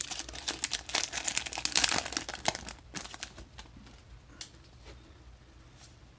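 Foil wrapper of a Magic: The Gathering collector booster pack crinkling and tearing as it is opened by hand. Busiest for the first two and a half seconds, then a few lighter crinkles and clicks that die away.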